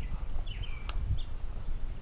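A bird repeating a short call that slides downward in pitch, about once every half to three-quarters of a second, over a steady low rumble. A single sharp click sounds about a second in.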